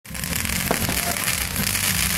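A string of firecrackers going off in a rapid, continuous crackle.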